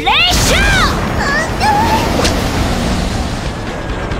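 Animated sci-fi battle sound effects: quick falling-pitch zaps in the first half second and short warbling electronic sounds a second or so later, over background music with a low booming bed.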